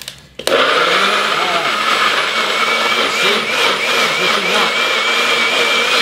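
Bullet personal blender switching on about half a second in and running steadily, puréeing roasted vegetables into a marinade. Its high motor whine wavers slightly in pitch.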